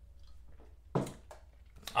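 Mostly quiet room tone, broken about a second in by a brief man's vocal sound, then a couple of faint clicks near the end.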